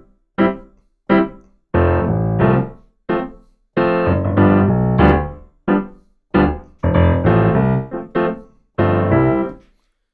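Keyboard in a piano sound played in short, detached notes and chords with a strong low bass line. The uneven, syncopated spacing is a reggae bass pattern that mostly avoids beat one.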